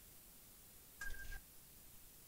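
Near silence with one short, high electronic beep about a second in.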